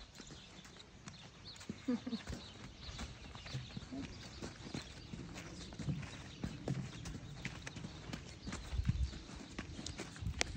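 A horse's hooves and a person's footsteps on sandy dirt as the horse is led at a walk: irregular soft thuds and scuffs.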